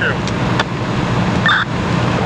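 Steady, loud rushing noise of a fully involved building fire and running fire apparatus, with a few crackles and a short radio chirp about one and a half seconds in.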